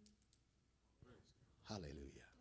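Near silence: room tone with a few faint clicks, then a man's voice near the end.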